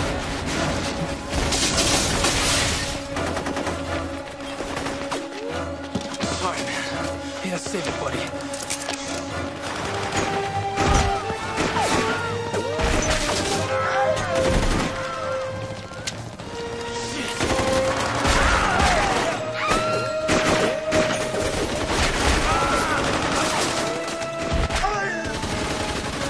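A film battle scene: a sustained firefight of rapid gunfire from several guns, over background music with long held notes.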